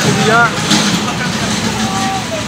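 Steady noise of road traffic on a busy street, behind a man's brief speech.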